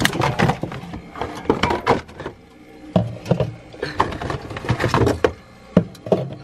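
Soda cans and cardboard can cartons being shifted about on a refrigerator's wire shelves, making a string of knocks and clinks.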